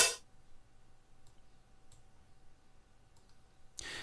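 A short closed hi-hat drum sample plays once at the start, a single crisp tick. It is followed by a few faint mouse clicks.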